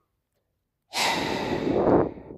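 A man's loud sigh, a long unpitched breath out that starts about a second in and trails off.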